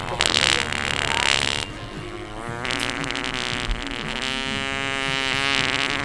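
Prank fart-noise toy letting off a short sputtering fart, then a long, drawn-out one with a steady buzzing pitch from about halfway on.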